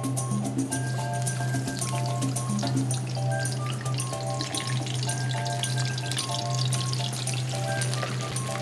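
Background music with a steady low drone and a simple melody, over battered prawns crackling and sizzling as they fry in a pan of hot oil.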